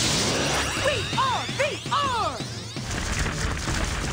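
Sci-fi action sound effects from a TV soundtrack: a whoosh at the start, then a string of electronic zaps that each rise and fall in pitch, mixed with hits.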